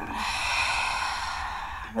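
One long, audible exhale by a woman, a steady breathy rush lasting nearly two seconds that slowly fades as the breath empties.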